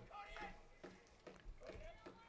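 Near silence, with faint distant voices.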